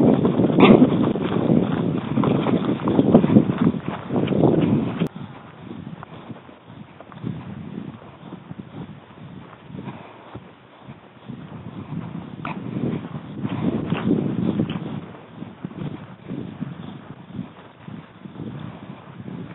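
Dogs that have caught a hog, with the animal noise of the catch loud for the first five seconds, dropping away, then rising again for a couple of seconds about thirteen seconds in.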